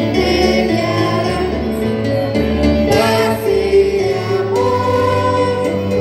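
Christian gospel song sung by several voices through microphones and a PA loudspeaker, over a pulsing low bass accompaniment.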